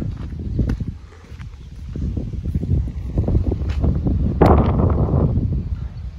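Wind buffeting the microphone with a steady low rumble, under a string of light knocks and rustles from the camera moving, and a louder noisy rush about four and a half seconds in.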